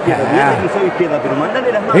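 Speech only: sports commentators talking.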